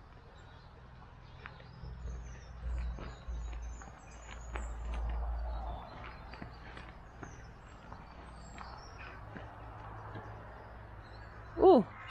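Faint, scattered high chirps of distant birds over quiet outdoor air, with a low rumble on the microphone between about two and six seconds in and a few light clicks.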